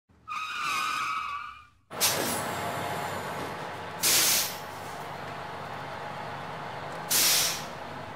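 Intro sound effects: a short pitched tone lasting about a second and a half, then a sudden rush of steady rumbling noise with two loud hisses about three seconds apart.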